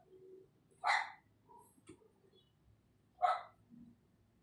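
A dog barking twice, about two and a half seconds apart.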